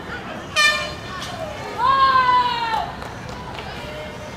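High-pitched shouting of young voices on a hockey pitch: a short sharp yell about half a second in, then one longer call that rises and falls from about two seconds in.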